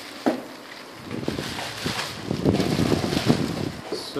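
Clear plastic packaging wrap crinkling and rustling as it is pulled off a telescope tube. There is a single sharp crackle about a quarter second in, then dense, continuous crinkling from about a second in that grows louder.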